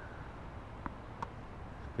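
Two faint tennis-ball impacts about a third of a second apart, the ball bouncing on the hard court and then struck with the racket on a drop-fed forehand, over a steady low background rumble.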